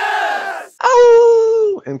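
A crowd shouting, then a single voice holding one long yell that sinks slightly in pitch and stops just before the end.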